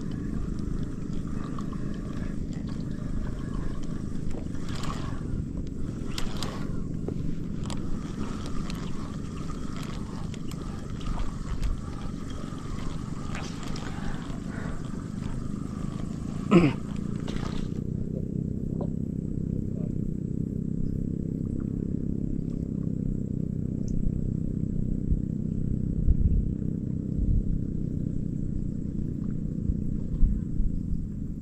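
A steady low rumble runs throughout, with a man clearing his throat and saying a word just past the middle.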